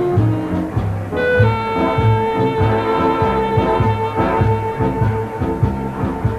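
Big band music: a horn section over a steady bass beat of about two pulses a second, with a long held note coming in about a second and a half in.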